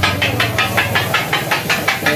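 Kothu parotta being chopped on a flat griddle with two flat metal blades: a rapid, steady clatter of metal striking the griddle, about eight strikes a second.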